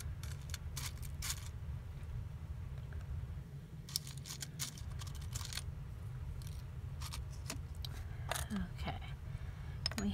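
Small craft pieces being handled on a work surface: scattered short clicks and rustles, a cluster of them about four to six seconds in, over a steady low hum.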